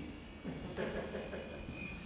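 A quiet pause in a room: faint background noise with a thin, steady high-pitched tone.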